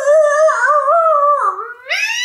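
A woman's wordless, high-pitched wail, its pitch wobbling up and down, dipping near the end and then climbing: a whimpering cry of dread.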